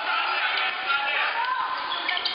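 A basketball bouncing on a hardwood gym floor as it is dribbled, under overlapping shouts and chatter from players and spectators.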